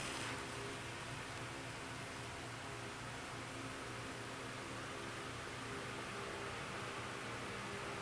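Steady hiss with a faint low hum, and no distinct sounds: room tone and recording noise.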